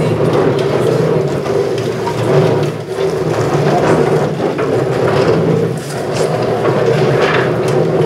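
Wooden chairs being dragged, scraped and knocked on the floor as a roomful of people rearranges them, with the general hubbub of the crowd throughout.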